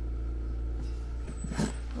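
A steady low machine hum, with a brief breath or murmur and a short knock as the camera is handled near the end.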